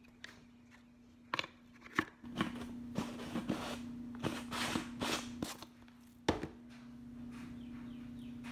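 A plastic tub of collagen powder being handled: a few clicks, then a run of short scraping, rustling noises as the screw lid is worked on, and a single loud knock as the tub is set down on the counter. A steady low hum runs underneath.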